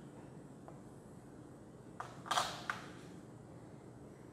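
Chalk drawn across a blackboard: a tap as it touches, a short scrape of under half a second, and a click as it lifts off, about halfway through. Low room noise lies under it.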